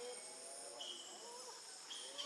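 Insects buzzing steadily at a high pitch, with faint short calls lower down that bend up and down in pitch.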